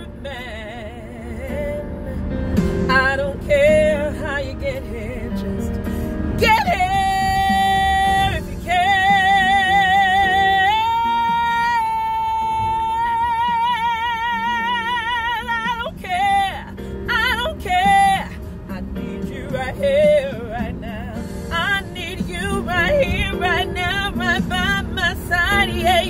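A woman singing a slow soul ballad solo, with wide vibrato and long held high notes in the middle stretch. There is a steady low car-cabin rumble underneath.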